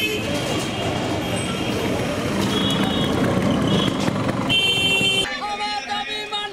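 Busy street traffic: engines and road noise with vehicle horns honking several times, the longest honk near the end. About five seconds in it cuts to a crowd's voices.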